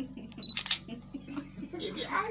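Soft, brief voice sounds with a few sharp clicks over a steady low hum.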